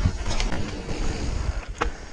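Wind buffeting the microphone of a handlebar or helmet camera over a mountain bike's tyres rumbling on a gravel trail, with a sharp click near the middle and a knock near the end.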